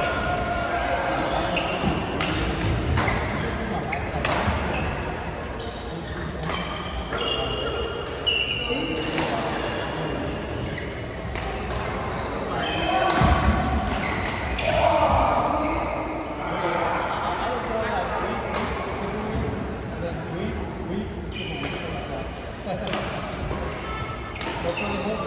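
Badminton rackets striking shuttlecocks in rallies on several courts in a large sports hall: sharp hits at irregular intervals, with players' voices in the background.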